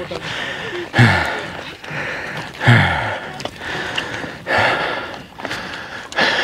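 A man's heavy breathing while climbing a steep hill: three loud voiced sighs, each falling in pitch, with hissing breaths between. The sound of someone out of breath from the exertion.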